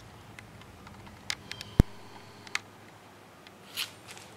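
A few light clicks and taps as a glass cavity slide is handled and set on a microscope's stage, with one sharp click about two seconds in and a brief rustle near the end.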